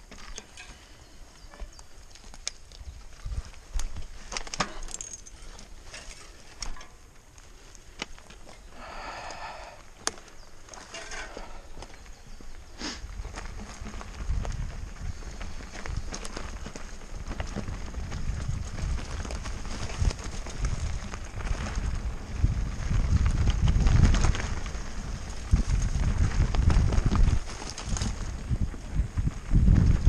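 Mountain bike ridden along a forest dirt trail: scattered clicks and knocks at first, then from about halfway a loud, uneven low rumble of tyres on dirt and the bike rattling over roots, with wind on the microphone, heaviest near the end. A short call from a voice about nine seconds in.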